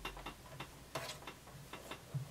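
Faint, irregular small clicks and ticks as a black skirt with an invisible zipper is handled and positioned under a sewing machine's presser foot.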